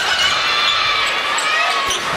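Indoor volleyball rally: high, wavering shoe squeaks on the hardwood court over crowd noise echoing in the arena, with a sharp knock of a ball contact near the end.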